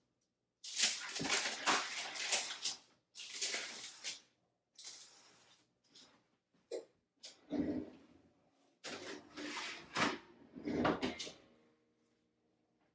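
A baking sheet and parchment paper being handled at the oven as a tray of cookies goes in: a run of short rustling and scraping noises with a few dull knocks.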